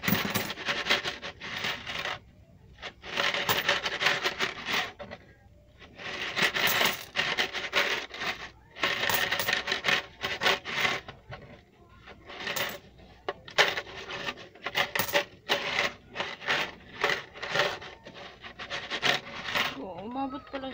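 Coins rattling and clinking as they are shaken out of a plastic piggy bank and drop onto a pile of coins, in bursts with short pauses between.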